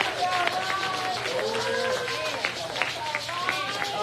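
Voices calling out in drawn-out, wavering cries, with quick sharp claps throughout.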